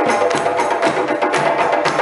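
West African drum ensemble of djembes and a set of dundun drums playing a fast, dense rhythm.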